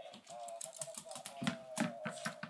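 A Shiba Inu puppy's claws clicking on a hardwood floor as it trots, a few sharp ticks a second.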